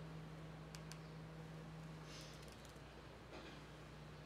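Faint computer keyboard keystrokes over a steady low hum: two light clicks about a second in, then a quick run of clicks about two seconds in.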